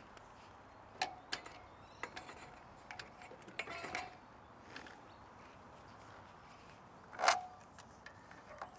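Faint clicks and clanks of a bicycle being lifted and set into the wheel channels of a metal drawbar bike rack, several of them with a brief metallic ring. The sharpest clank comes about seven seconds in.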